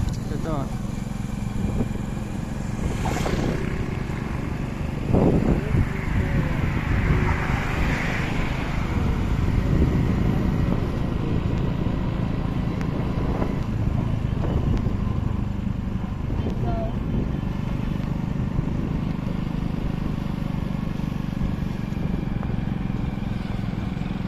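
Steady low rumble of a moving road vehicle with wind buffeting the microphone, as heard by a rider in the open air. There is a louder jolt about five seconds in.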